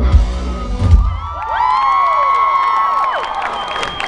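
A rock band's song ends on a final low hit about a second in. Then a concert crowd screams and cheers, with many high voices whooping up and down in pitch.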